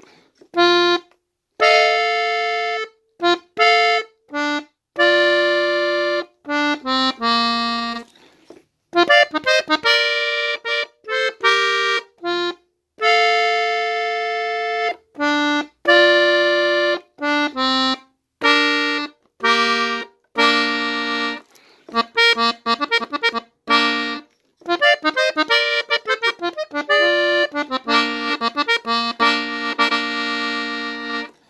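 Button accordion tuned in F, played in B-flat: the melody of a corrido played in short phrases and single notes, with brief silences between them.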